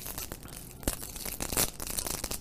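Clear plastic candy wrapper being crinkled and peeled open by hand, in quick irregular crackles.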